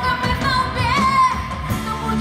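Live musical-theatre song with rock band backing: a singer holds a wavering note with vibrato over drums and electric guitar.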